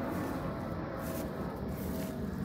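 Steady low rumble of outdoor background noise with a faint, steady, thin tone over it.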